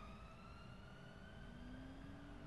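Near silence: faint room tone with a thin whine slowly rising in pitch, and a lower steady hum joining about one and a half seconds in.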